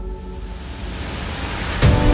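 An edited-in transition effect: a rising noise sweep that builds for almost two seconds and ends in a sudden hit near the end, where the music comes back in.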